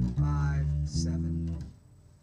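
Electric guitar playing a short run of held notes: the note changes twice, and the guitar is stopped about three-quarters of the way through.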